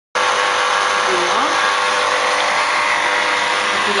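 Hurom slow auger juicer's electric motor running with a steady whirring hum that cuts in suddenly just after the start.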